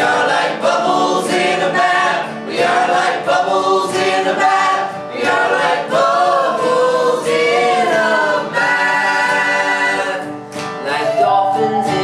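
A mixed group of men and a woman singing together in several-part harmony, with an acoustic guitar strummed along; a long held note comes about two-thirds of the way through.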